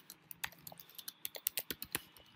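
Computer keyboard being typed on: a quick, irregular run of key clicks, several a second, with a few louder strokes.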